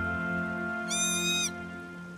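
Soft background score of sustained chords, fading gently, with a short high-pitched squeal about a second in.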